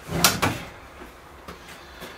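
A single sharp knock about a quarter second in, with a short ringing tail, followed by quiet with a faint click.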